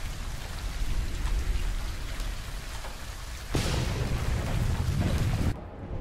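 Rain falling steadily in an anime episode's soundtrack, with a louder, deeper rumble of thunder from about three and a half seconds in that cuts off about two seconds later.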